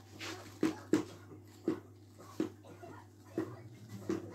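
A toddler clomping across a hard laminate floor in oversized adult shoes: about five uneven knocks of the big shoes hitting the floor.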